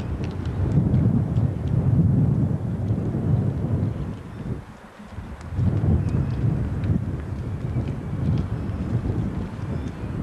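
Wind buffeting the camcorder's microphone in gusts, a heavy low rumble that eases for a moment about halfway through and then comes back.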